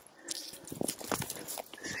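Footsteps on dry grass and brush: an irregular run of crunches and rustles.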